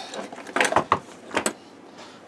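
Cast-iron Atlas rotary table being lifted off the workbench and moved: a few short metallic clanks and clicks within the first second and a half.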